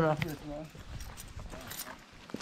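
Footsteps on dry dirt and loose gravel, a few faint irregular steps, after a man's voice trails off in the first half-second.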